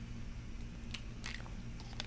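Faint drinking sounds from a plastic water bottle: a few soft sips, swallows and light crinkles of the plastic. A steady low hum runs under them.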